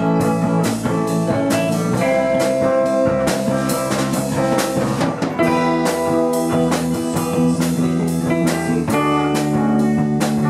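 Live rock band playing an instrumental passage: electric guitar chords held over a drum kit keeping a steady beat, about two to three hits a second.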